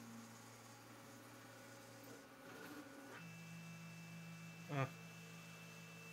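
Faint, steady electrical hum; about three seconds in it changes to a slightly different hum with a thin high tone over it.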